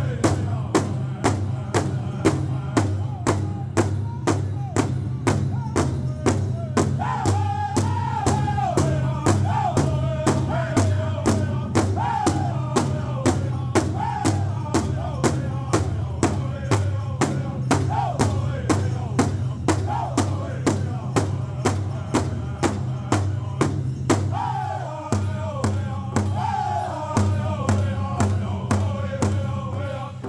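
Powwow drum group singing a Southern-style contest song in unison over a large shared drum struck together with sticks in a steady beat of about two to three strikes a second. The singing drops out briefly about three-quarters of the way through while the drumming carries on, then resumes.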